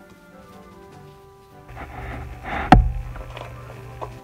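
Trading cards being slid out of plastic binder-page sleeves, the plastic rustling from about halfway, with one sharp click about three-quarters of the way through. Soft background music plays throughout.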